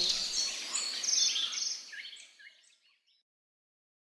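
Several songbirds chirping and trilling together in a dawn chorus, fading out over the second half.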